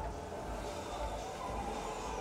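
Faint low rumble under a quiet, even hiss: outdoor street background noise.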